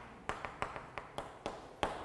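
Chalk tapping against a chalkboard as characters are written: a string of light, short clicks, about three a second.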